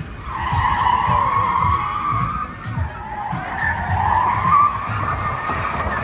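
Tyres squealing continuously as the all-electric Ford Mustang Mach-E 1400 spins donuts, the pitch wavering up and down as the slide changes.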